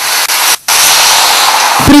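Loud, steady hissing noise that cuts out briefly about half a second in; a man's voice begins near the end.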